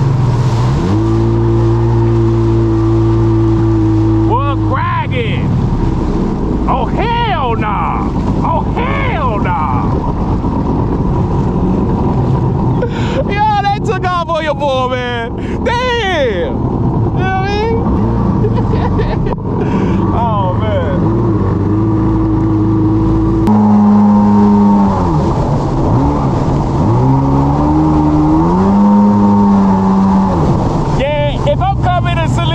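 Jet ski engine running at speed over choppy water, with spray and wind noise. Its pitch holds steady for stretches, drops suddenly late on and rises again near the end as the throttle changes.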